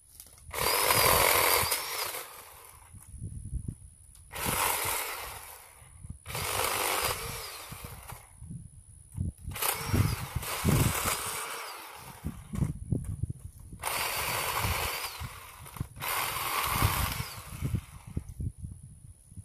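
Power saw cutting tree branches in six short bursts, its motor whine rising and falling within each cut and dropping away in the pauses between.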